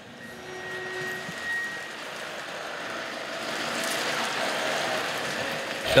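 Flatbed tow truck driving slowly past, a steady rushing vehicle noise that grows louder over the first few seconds.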